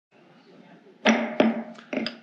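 Three sharp knocks, each with a brief ringing tail: the first about a second in, the next soon after, the last near the end, over faint room noise.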